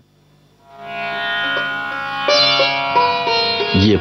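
Sitar playing, fading in about a second in: plucked melody notes over a steady drone, growing louder midway.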